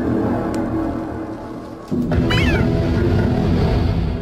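Bubble wrap popped by fingers: a sharp pop about half a second in, over a loud low rumble that grows louder about two seconds in. A short high squeak follows.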